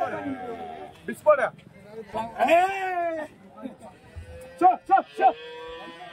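A cow or calf moos once just past the middle, a call about a second long that rises and then falls in pitch, with voices around it.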